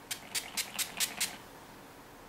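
A pump spray bottle of coconut-water refreshing spray giving about six short, hissing spritzes in quick succession, then stopping just past halfway through.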